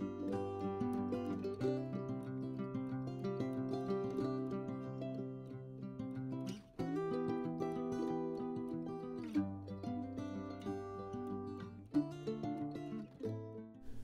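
Instrumental background music led by plucked strings, moving through a series of held chords.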